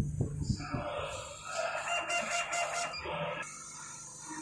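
A rooster crowing once, a single drawn-out call of about two and a half seconds that starts about half a second in and is loudest near its end.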